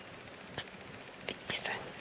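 A quiet stretch with a brief soft whisper about one and a half seconds in and a few faint small clicks.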